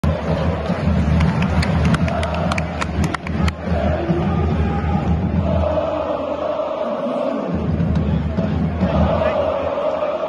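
A large stadium crowd of football supporters chanting and singing together after a goal, with a quick run of sharp claps close to the microphone in the first few seconds. Later the chant settles into long held notes.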